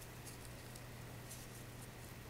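Faint rustling of ric rac ribbon being rolled between fingers, over a steady low hum.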